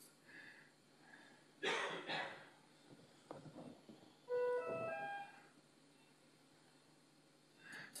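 A short chime of three quick notes, each higher than the last, about halfway through, like an electronic alert or ringtone in the operating room. A brief hiss comes a couple of seconds before it.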